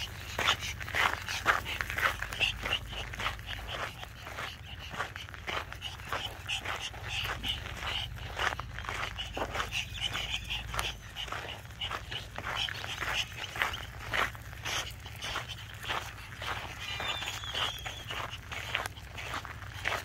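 Two small dogs on leashes, a dog heard among them, over a steady run of footsteps crunching on a dirt road.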